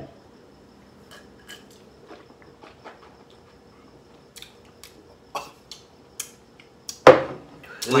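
People drinking shots of wine from glasses in a quiet room: scattered faint clicks and small glass knocks, then a sudden loud breath-like vocal reaction about seven seconds in.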